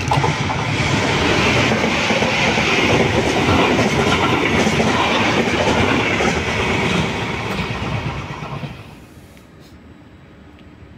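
Electric-hauled container freight train running past on the rails, its wheels clattering over the rail joints; the sound fades away about nine seconds in.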